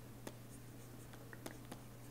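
Faint handwriting with a pen: light scratching and a few small taps as the pen touches down, over a steady low hum.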